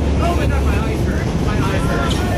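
Steady low rumble of wind buffeting the phone's microphone on the deck of a moving boat, with faint indistinct voices over it.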